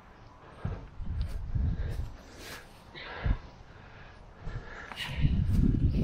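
A person breathing hard in short puffs while hauling a mattress, with a few light knocks and irregular low rumbling on the microphone.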